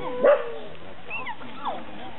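A dog barks once, short and loud, about a quarter second in, followed by fainter high yelps.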